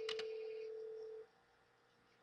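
A steady, single-pitched electrical hum or whine on the recording line, with a couple of faint short clicks near the start. The hum cuts off just over a second in, leaving near silence.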